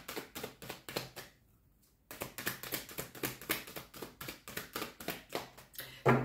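A deck of oracle cards shuffled by hand: a rapid run of card flicks and taps, which stops for about half a second near a second and a half in before picking up again.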